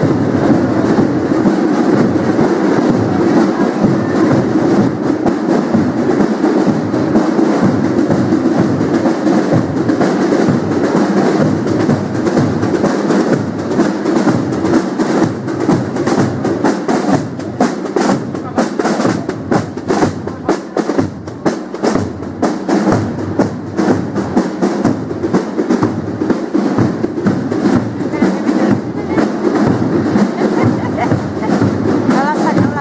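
Military marching drums beating a march rhythm, with steady low beats under rapid sharp strokes. The strokes are sharpest and busiest in the second half, as the drummers pass close by.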